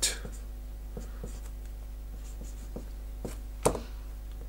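Marker pen writing on a board in a series of short, faint strokes, with one sharper click near the end, over a steady low hum.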